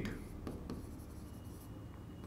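Marker pen writing on a whiteboard: faint, light scratchy strokes.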